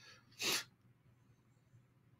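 A person's single short, sharp breath noise about half a second in, then near silence.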